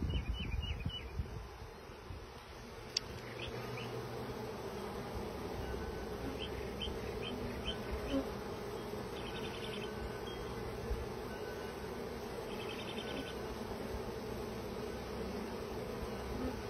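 Honeybee swarm buzzing in a steady hum as the bees crowd and walk into a hive entrance, the hum swelling a little about three seconds in.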